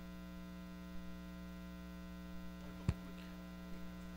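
Steady electrical mains hum with many overtones on the microphone and sound-system line, and one short sharp click about three seconds in.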